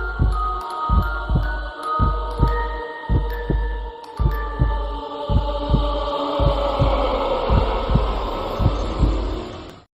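Outro sound design: a heartbeat-style sound effect, a deep double thump repeating about once a second, under a hum and sustained high synth tones.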